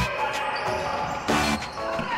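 A basketball being dribbled on a wooden gym floor, heard under a quieter stretch of background music.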